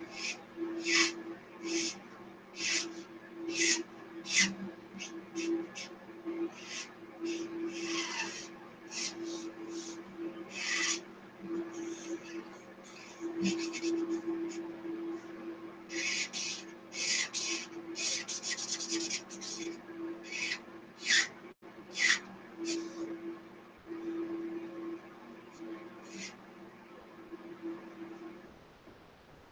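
Marker strokes rubbing across paper while colouring in: short scratchy swishes, roughly one or two a second, with a denser run of strokes about two-thirds of the way through.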